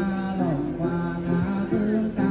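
Then ritual singing: voices chanting in long held notes that step down in pitch now and then.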